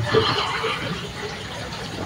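Laughter right after a joke, loudest at the start and trailing off after about a second.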